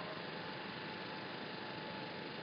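Faint, steady background hum and hiss of street traffic, with no distinct events.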